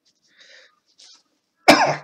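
A single sharp cough near the end, after a quiet second or so.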